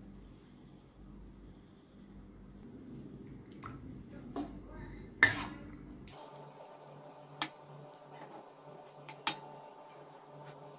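Water simmering in a metal wok with instant noodles in it, and a metal spatula stirring the noodles and knocking against the wok a few times, the sharpest knock about five seconds in.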